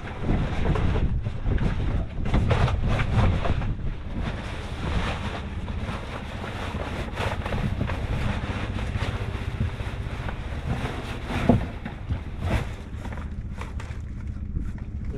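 Wind buffeting the microphone, with rustling and crinkling of packaging as items are handled and pulled out of a box, thickest in the first few seconds and again near the end.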